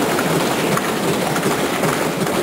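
Many people thumping wooden desks in applause: a dense, steady rattle of knocks with no voice over it.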